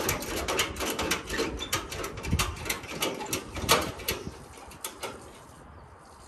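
Ratchet strap being worked to tie a vehicle down on a car trailer: a fast, irregular run of sharp clicks that stops about five seconds in.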